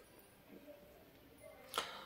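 Near silence: quiet room tone in a pause between speech, with one brief faint noise near the end.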